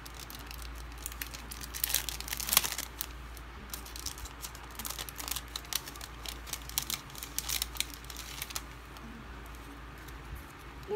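Clear plastic packaging sleeve crinkling while a stack of die-cut paper ephemera pieces is slid out of it and handled, a run of irregular crackles that is loudest about two and a half seconds in and busy again from about four to eight seconds in.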